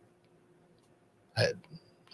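Near silence for over a second, then a single short, clipped vocal sound from a man about a second and a half in.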